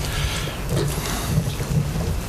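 Steady hiss and low hum from a courtroom microphone feed during a pause in speech, with no distinct sound event.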